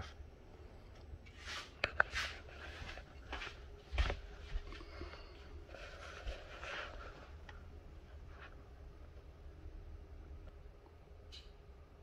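A few faint clicks and knocks of handling in the first seconds, the sharpest about two and four seconds in, with some brief rustling, then quiet room tone.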